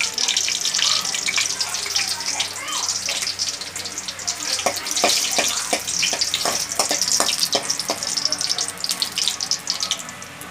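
Dried red chillies sizzling and crackling in hot oil in an aluminium kadai, with a steel spoon clicking and scraping against the pan as they are stirred, the clicks coming thick in the second half.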